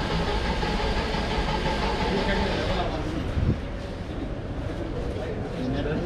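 Busy street ambience: a steady hum of traffic and machinery. The higher part of the noise drops off about three seconds in, and a dull thump follows.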